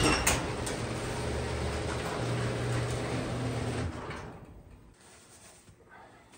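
Sectional garage door being raised partway, a steady rumble that stops about four seconds in.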